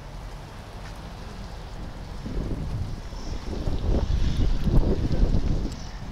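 Wind buffeting the camera's microphone: a low, uneven rumble that grows stronger partway through.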